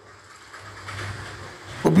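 Faint background noise with a low hum during a short break in a man's speech through a microphone. His voice comes back in near the end.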